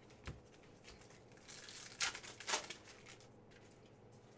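Donruss Optic football trading cards sliding against each other as a stack is thumbed through: a faint rustle with a couple of light clicks of card stock near the middle.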